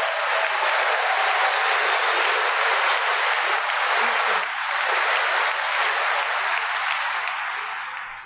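Audience applauding, a steady wash of clapping that eases off near the end.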